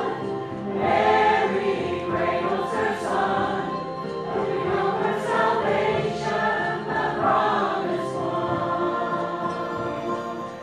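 Mixed church choir of men's and women's voices singing together.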